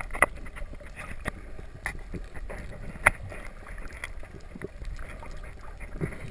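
Underwater ambience picked up by a camera just below the surface: muffled water movement with scattered sharp clicks, the loudest about three seconds in.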